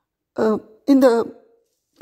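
A woman's voice speaking Tamil: a short voiced sound about a third of a second in, then one word just under a second in, with silences around them.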